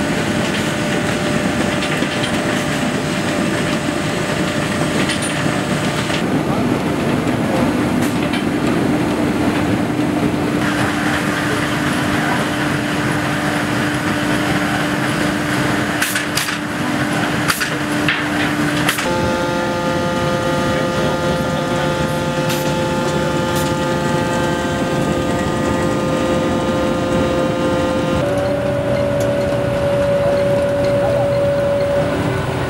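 Grimme potato harvesting and sorting machinery running: conveyors and rollers carrying potatoes, with a steady machine hum whose pitch changes abruptly several times. There are a few sharp clicks about halfway through.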